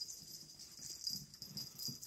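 Small dogs playing keep-away over a chew, with faint dog noises in the second half.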